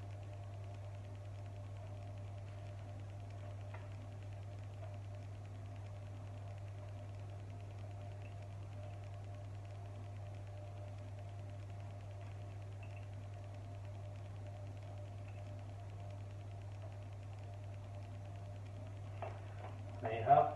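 Steady low electrical hum with a fainter steady tone above it, and a faint click about four seconds in and another near the end.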